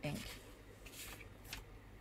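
Sheets of paper being shuffled and slid over a wooden table: faint rustling with a few soft scrapes.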